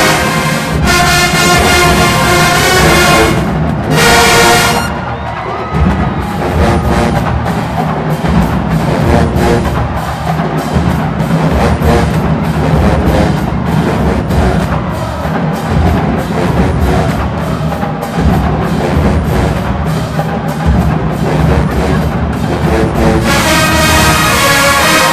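HBCU show-style marching band playing loudly: the brass plays for about the first five seconds, then drops out for a drumline break of snares, tenors and bass drums, and the horns come back in near the end.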